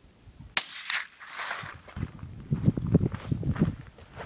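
A single small-calibre scoped rifle shot: one sharp crack about half a second in, a second softer crack just after it and a short trailing tail. From about two seconds in, a run of low knocks and rustling close to the microphone.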